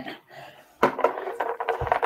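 Plastic food containers being handled on a wooden table: a quiet moment, then clicks, knocks and light rattling from about a second in as a container is picked up, with a dull thump near the end.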